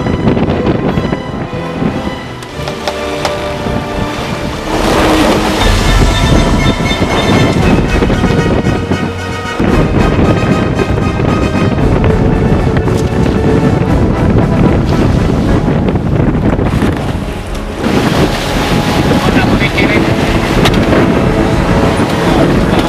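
Background music with sustained notes.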